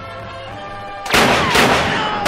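Held music notes, then about a second in two loud handgun shots half a second apart, each with a long echoing tail.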